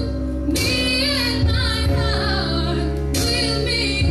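A young woman's solo voice singing a slow pop ballad into a microphone over instrumental accompaniment. Sung phrases begin about half a second in and again near the end.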